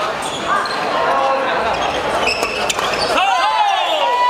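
Badminton players' court shoes squeaking on a wooden sports-hall floor: several short, sharp squeaks close together in the last second, after a few light clicks, with voices in the hall.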